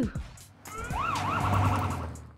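Police siren sound effect over a low bass note. It begins under a second in with a rising whoop and a second whoop, then goes into a fast warbling yelp.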